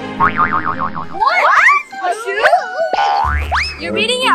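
Cartoon sound effects: a wobbling boing in the first second, then a series of swooping whistle-like pitch slides, ending in a long rising swoop.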